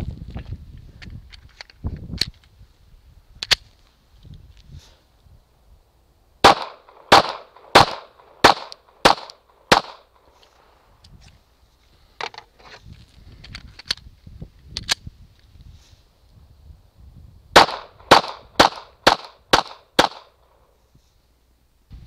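Glock 42 subcompact pistol firing .380 ACP: two strings of about six sharp shots each, roughly half a second apart, the first string about six seconds in and the second about seventeen seconds in. A few fainter single reports come before and between them.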